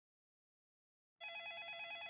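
Silence, then about a second in an electronic telephone starts ringing with a fast, warbling trill.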